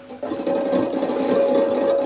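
The Solenoid Lyre's small electric fan starts about a quarter-second in and runs steadily. Its noise comes through the instrument's single-coil pickup as a dense hiss with a steady hum, described as really noisy.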